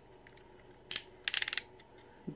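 Small hard-plastic clicks as miniature toy guns are fitted into a Transformers action figure's hands: one sharp click about a second in, then a quick cluster of clicks.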